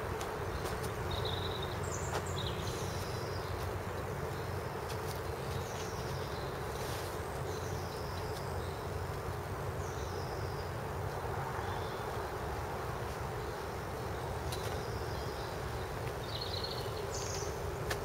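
Outdoor background: a steady low rumble of distant traffic, with birds chirping short, falling high notes every second or two.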